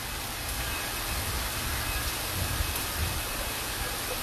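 Steady rushing of water flowing through fish hatchery tanks, under an uneven low rumble.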